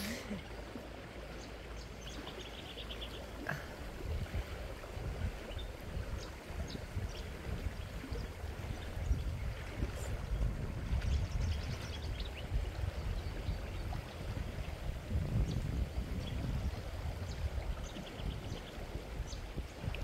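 Outdoor ambience: a low, uneven rumble on the phone's microphone that swells and fades, with a faint high chirping near the start and a few light clicks.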